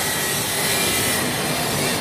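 Steady rasping hiss of glass-cutting and grinding machinery on a crystal factory floor.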